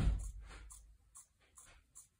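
Fabric scissors snipping through fabric on a table, a steady run of short crisp snips about two to three a second. A dull thump sounds at the very start.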